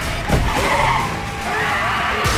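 Car tyres squealing as a vehicle skids, a wavering high squeal over trailer music, with a thump about a third of a second in.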